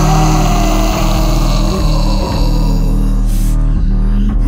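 Live rock band music between vocal lines: a sustained low bass and synth drone with a tone that slowly falls in pitch over the first few seconds, and hardly any drum hits.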